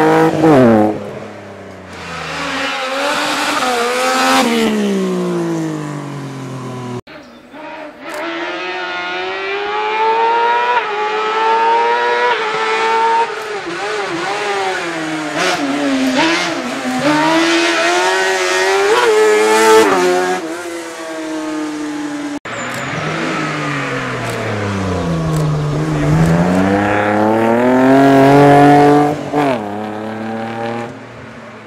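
Racing-car engines revving hard and falling back over and over as the cars accelerate and brake between slalom cones, with tire noise. The first run is a BMW 3 Series hillclimb car and the middle run a Trabant-bodied special. The sound breaks off abruptly twice, about 7 and 22 seconds in.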